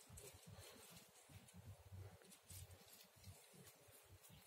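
Near silence, with faint rustling and soft pats of gloved hands pressing loose soil around a tomato seedling.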